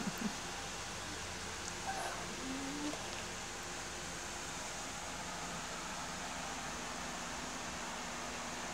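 Steady, even background hiss of room tone. The tail of a short laugh comes at the very start, and a brief faint rising tone comes about two and a half seconds in.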